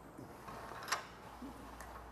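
A door closer's arm at the top of a door frame being handled by hand, giving one sharp click about halfway through and a few faint ticks over a low hum.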